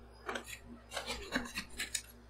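Two metal spatulas scraping and chopping across a chilled steel ice-cream-roll pan, working a frozen ice cream base mixed with crushed Sun Chips: several short scraping strokes at uneven spacing, over a steady low hum.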